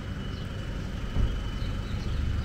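Low, steady rumble of distant motorway traffic, with a brief low thump a little past the middle.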